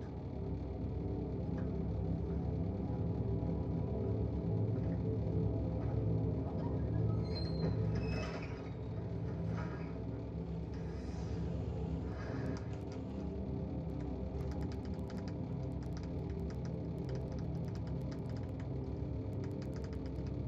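Dark, sustained horror-film score: a low, steady drone of held tones, with a few higher swells in the middle. Light scattered clicks join in during the second half.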